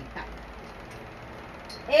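A pause in the talk filled with steady, low background noise with a faint hum. A woman's voice trails off at the start and begins again near the end.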